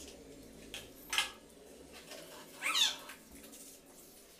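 An animal calling twice: a short call about a second in, then a longer call near three seconds whose pitch slides and wavers.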